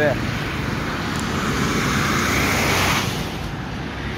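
Traffic on a busy road: a low engine hum from motorcycles and minibuses, with a rushing swell of passing-vehicle noise that builds about a second in and cuts off sharply about three seconds in.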